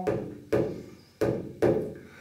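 Hand frame drum struck about four times at a slow, uneven pace, each stroke ringing on and fading before the next.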